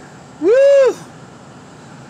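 A person whoops "woo!" once, a short call that rises and falls in pitch, in celebration.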